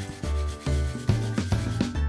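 Daikon radish being grated on a metal grater, a rasping scrape, over children's background music with a steady beat.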